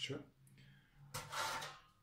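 Metal baking tray shifted across an electric stovetop: one short scrape lasting under a second, about a second in.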